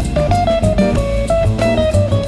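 Jazz guitar playing a quick single-note melody line over bass and a drum kit with cymbals.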